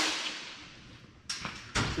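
A sharp noise at the start that dies away over about a second, echoing in a large metal shop, then a shorter knock a little past halfway.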